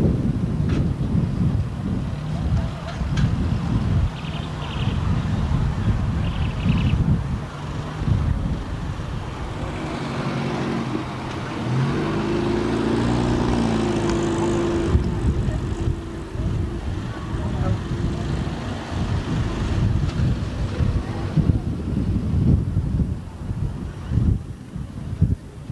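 Classic cars driving slowly past at low speed one after another, their engines running, with wind buffeting the microphone. About halfway through, a steadier engine note stands out.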